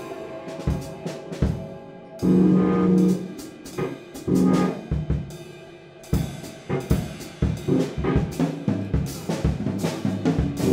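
Live jazz group playing: a drum kit keeps up scattered strokes on snare and cymbals while saxophones hold loud, low chords about two seconds in and again near four and a half seconds. The drumming gets busier in the second half.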